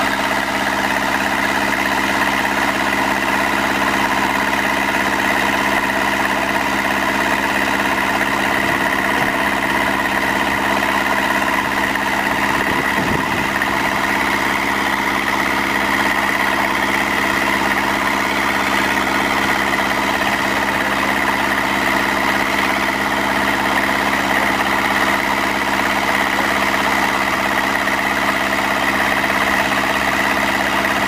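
Engine of an irrigation motor pump running steadily, with the hiss of water spraying from large gun sprinklers.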